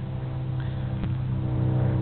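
A 2001 Chevrolet Suburban's V8 engine idling steadily, growing gradually louder.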